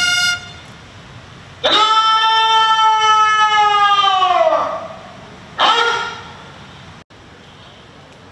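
Ceremonial bugle call sounded for a salute: a run of short notes ends just after the start, then one long held note of about three seconds that sags in pitch as it fades, followed by a short final note.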